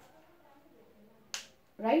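A single sharp click about a second and a half in, a whiteboard marker's cap being snapped on.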